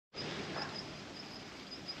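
Quiet outdoor garden ambience: a faint hiss with a thin, steady high-pitched note that pulses a few times.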